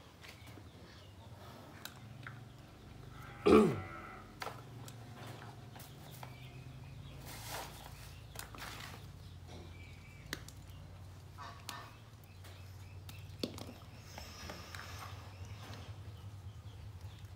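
A short, loud animal call falling steeply in pitch about three and a half seconds in, over a low steady hum with scattered faint clicks and taps.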